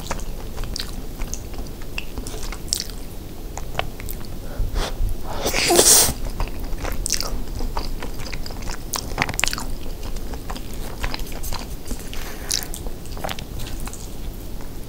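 Close-miked chewing and wet mouth sounds of eating a soft, cheesy rice casserole, with many small sharp clicks as a plastic spoon scoops through melted cheese in a metal pan. One louder, hissing sound lasting about half a second comes about six seconds in.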